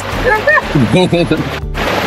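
A person talking over background music with sung vocals, ending in a short burst of rushing hiss.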